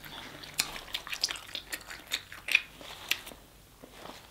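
Wet chewing and mouth clicks while eating sauce-coated king crab meat, a scatter of short sharp smacks that thins out near the end.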